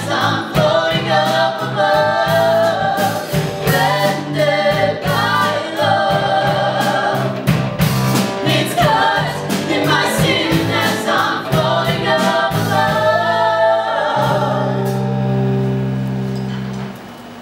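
A live musical-theatre song: singing over a small band of keyboard, drums and electric guitar, with drum hits throughout. About two seconds before the end the song settles onto a long held chord that starts to fade.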